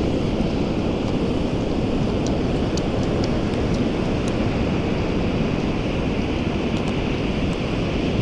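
Steady noise of ocean surf on a beach, mixed with wind buffeting the microphone.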